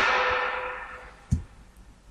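The last word of a man's voice dying away in room echo, then a single short click a little over a second in, typical of a computer mouse.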